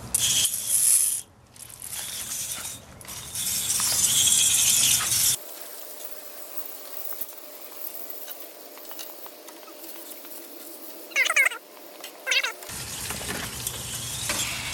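Liquid coil cleaner hissing from a sprayer nozzle in bursts, the loudest about three to five seconds in. After that comes a quieter sped-up stretch with two short squeaks near the end, high-pitched like voices played fast.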